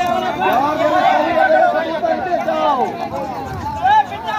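A group of men talking and calling out at once, several voices overlapping in a loud, steady chatter.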